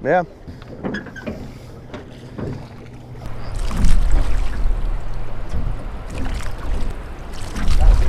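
Oars of a drift boat pulling through river water, a splashing stroke about every four seconds, over a deep wind rumble on the microphone.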